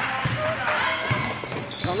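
A basketball bouncing on an indoor gym court, a few separate thumps about a second apart, with spectators' voices around it.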